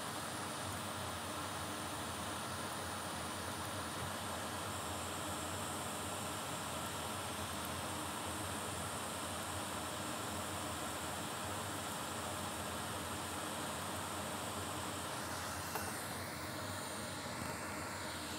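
Steady, even background hiss (room tone) with no distinct events.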